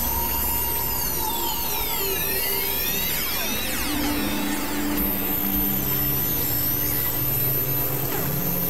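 Dense experimental electronic music: several held drone tones that shift every second or two, under many sweeping tones gliding up and down in pitch, over a noisy wash.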